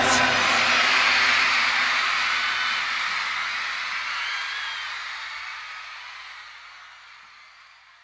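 The megamix's outro after the singing and beat stop: a hissing wash of noise that fades out slowly and evenly over about eight seconds, with a faint low hum beneath it.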